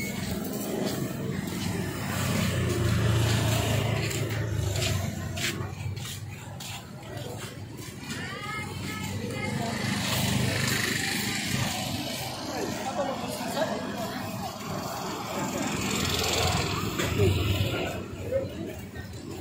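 Market bustle: indistinct voices of people nearby with music playing in the background, over a steady low rumble.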